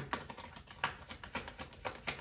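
Hands handling a tarot card deck: a quick, irregular run of light clicks and taps from the cards and fingernails, with a few louder clicks about a second in and near the end.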